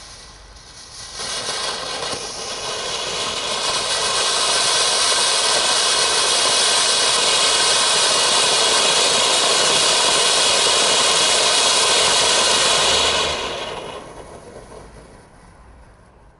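Lesli Magma firework fountain burning: a steady rushing hiss of sparks that swells a second in, builds to full strength over the next few seconds, holds, then dies away from about thirteen seconds in.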